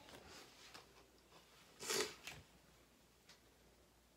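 Quiet handling sounds of a plastic icing piping bag and gingerbread pieces being worked on a table: a few faint small clicks and one brief rustle about two seconds in.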